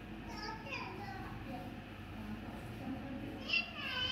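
A child's high voice calling out in the background twice: once briefly about half a second in, and again louder near the end. A steady low hum lies underneath.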